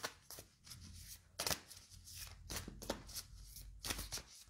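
A deck of cards shuffled by hand, the cards slapping together in a run of quick, irregular snaps.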